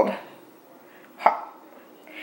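A woman's voice trailing off at the start, then a single short, sharp sound a little over a second in.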